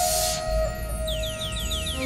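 Live folk instrumental music: a flute holds a note while a hissing wash stops about half a second in, then a keyboard synthesizer plays a quick run of falling chirps, about six a second.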